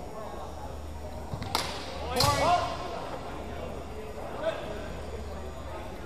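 Two sharp strikes of longswords about two-thirds of a second apart, each ringing briefly, with a voice calling out right after the second.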